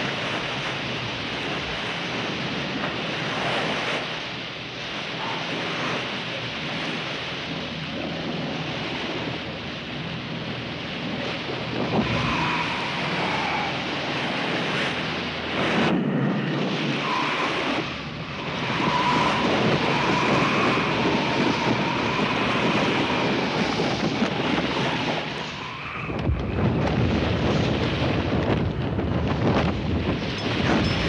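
Strong wind and rough sea around a sailing yacht: a dense, steady rush of wind and breaking water that shifts abruptly a few times. A faint wavering whistle rides on it through the middle stretch.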